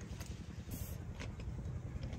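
A person chewing food, with a few faint mouth clicks, over a steady low rumble.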